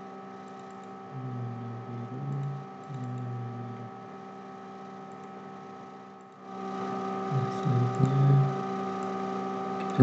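A steady electrical hum with faint computer keyboard clicks. The hum grows louder about six seconds in.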